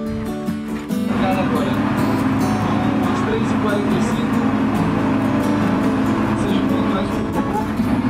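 Music, then about a second in the louder noise of a boat under way: a steady engine drone with people talking.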